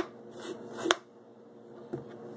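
Small metal spoon scraping seeds out of a halved cucumber, with a sharp tap about a second in, then quieter.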